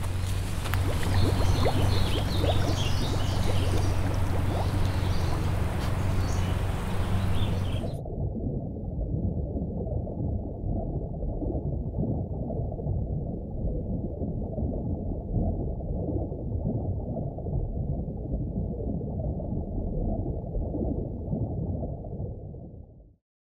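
Outdoor ambience with scattered short high chirps over a low steady hum. About eight seconds in it cuts abruptly to a muffled, underwater-sounding churn of water with all the high sound gone.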